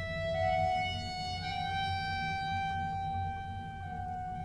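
Orchestral classical music: a slow melody of long held notes that steps gently upward, over a low accompaniment.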